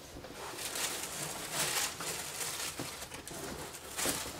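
Fleece blankets rustling and brushing as a blanket-wrapped doll is pushed further into a box, in irregular soft swishes with the fullest one about halfway through.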